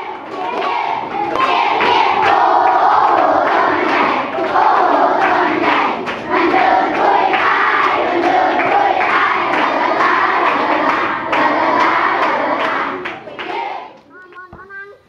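A group of children chanting loudly together, with hand claps through it; the sound fades out near the end.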